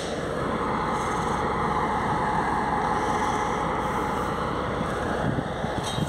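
Steady vehicle engine noise, swelling slightly in the middle.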